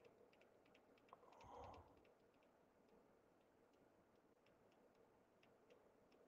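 Near silence: faint, irregular light clicks, with a brief soft noise about a second and a half in.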